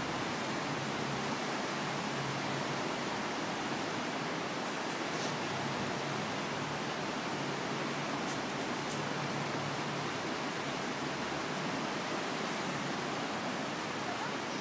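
Steady rushing of the Niagara River's whitewater rapids, an even noise with no rise or fall, with a few faint clicks around five and nine seconds in.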